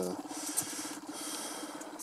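Felt-tip marker drawing on paper: a steady low squeak from the tip dragging, with a scratchy hiss over it.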